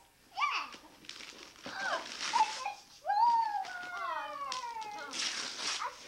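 High-pitched, drawn-out exclamations from young children, their pitch gliding down, loudest about halfway through. Wrapping paper is rustled and torn in short noisy bursts, once about a third of the way in and again near the end.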